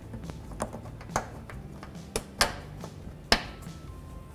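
Plastic push-in pins and the lower splash shield snapping into their clips under a car: about five sharp plastic clicks, the loudest a little over three seconds in.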